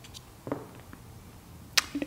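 Quiet handling of a folding knife's parts as the liners and blade are fitted together: a few faint clicks, with one sharper click near the end.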